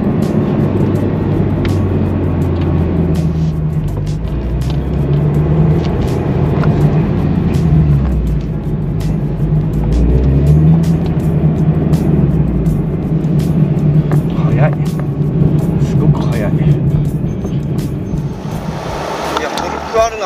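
In-cabin engine and road noise from a Subaru BRZ / GR86 with its 2.4-litre FA24 flat-four and an aftermarket exhaust, cruising in town traffic. The engine note steps up and down a few times with throttle and gear changes, then eases off about two-thirds of the way in.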